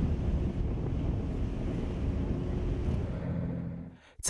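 Wind buffeting the microphone over the wash of the sea: a steady low rumble that fades out near the end.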